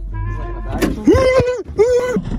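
A person's voice calling out in short, held notes, each rising and then holding steady: one about a second in, another near the end, with a sharp click just before the first.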